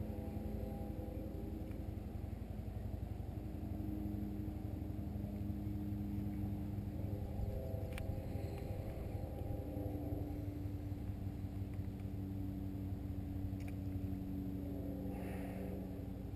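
A motor engine droning steadily in the distance, its pitch drifting slightly, over a low rumble. A single sharp click comes about halfway through.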